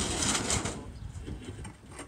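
Steel cement mixer drum being handled on the mixer, a loud scraping, rattling noise for the first half-second or so, then fainter knocks as it is held in place.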